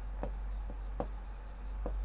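Pen writing on a board: faint scratching strokes with a few short taps of the tip, over a steady low hum.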